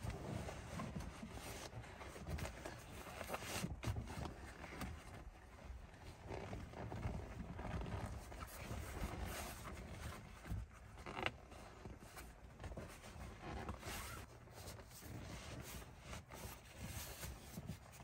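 Camo seat cover being pulled and worked over a truck seat: quiet, irregular rustling and scraping of the cover against the seat, with an occasional sharper knock.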